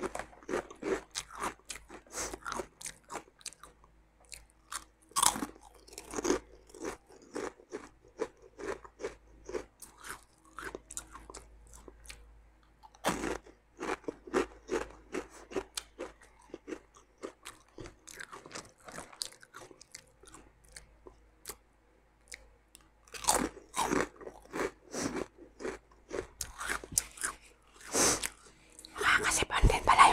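Close-up crunching and chewing of Chicharron ni Mang Juan puffed snack chips: runs of sharp, crisp crackles with short pauses between mouthfuls. The foil snack bag rustles as a hand reaches in for more.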